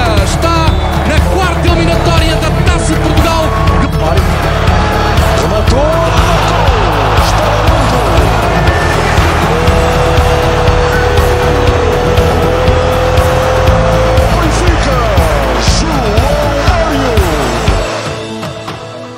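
Background music with a heavy bass beat and gliding, sliding tones, including one long held note in the middle; it drops away abruptly at the end.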